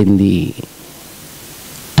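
A man's voice, preaching into a microphone, finishes a phrase in the first half-second, then a pause follows with only a steady low hiss of background noise.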